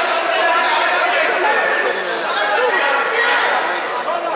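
Crowd chatter in a large hall: many voices talking over one another, with no single voice standing out.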